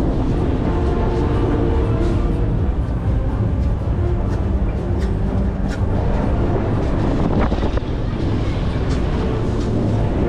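Music playing loudly and steadily over the ride's sound system, mixed with wind on the microphone high up on a freefall tower.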